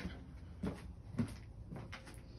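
Three faint, soft knocks about half a second apart over a low, steady background hum.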